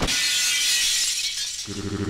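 Glass shattering sound effect: a spray of breaking, tinkling glass that starts sharply and fades over about a second and a half. A pitched sound begins near the end.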